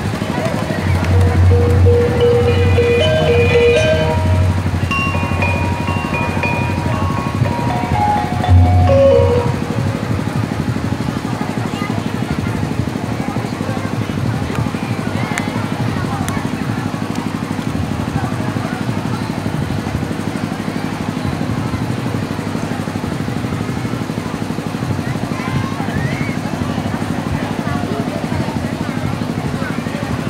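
Parade crowd noise with music over loudspeakers: a melody of held notes with low beats for about the first ten seconds, then steady crowd chatter over a low hum.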